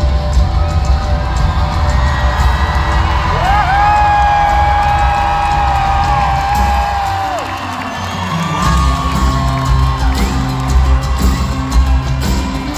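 Live pop-rock band playing in an arena, heavy on bass and drums, with the crowd cheering and whooping. In the middle, one long high held note slides up at its start and falls away at its end.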